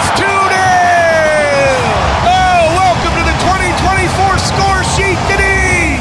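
Soccer play-by-play commentator's drawn-out "Goal!" call, held for about two seconds and falling in pitch, then short excited shouts of commentary over stadium crowd noise.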